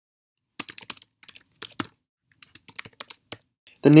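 Computer keyboard being typed on in quick runs of keystrokes, starting about half a second in, with short pauses between the runs.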